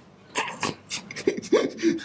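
Short, choppy bursts of a man's laughter, a few a second, starting just after a brief pause.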